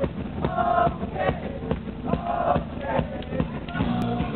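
A band playing live and loud, a male voice singing or shouting over a steady drum beat, recorded from within the audience.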